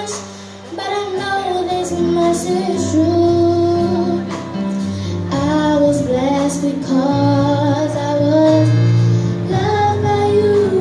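A young girl singing a slow ballad solo into a microphone over instrumental accompaniment with long held bass notes. Her voice drops out briefly just after the start, then carries on.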